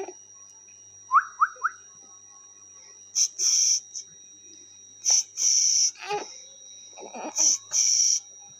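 High whistle-like sounds: three quick rising chirps about a second in, then three longer, louder high-pitched whistles about two seconds apart.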